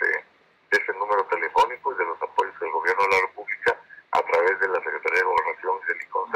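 Speech only: a man talking in Spanish, with only brief pauses between phrases.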